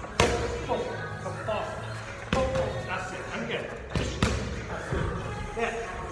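Boxing gloves smacking into focus mitts during pad work: single sharp hits about two seconds apart, then a quick double hit a little past the middle, each with a short ring of the hall.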